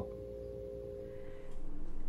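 Faint steady tones: two held together for about a second and a half, then a single lower one, over a low hum.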